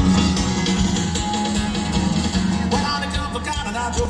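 Live band music led by a strummed acoustic guitar with bass, and a voice coming in near the end.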